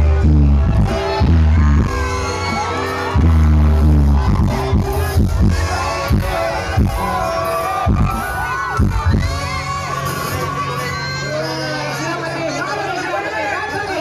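Loud live music over a stage PA: deep bass notes for the first few seconds, then a run of sharp drum hits, with a crowd shouting and cheering throughout.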